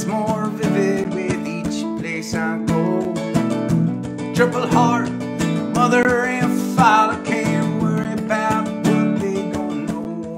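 Acoustic guitar strummed steadily, with a harmonica held in a neck rack playing a bending melody over it.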